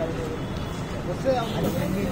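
Indistinct voices of people talking nearby, over a steady low rumble of outdoor traffic.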